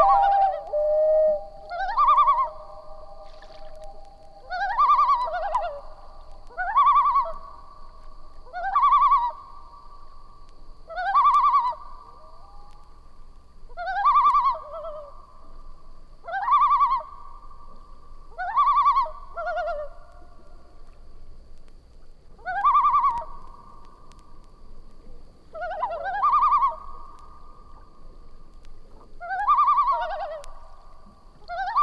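Common loon calling: the end of a long held wail, then a series of rising, wavering phrases repeated about every two seconds.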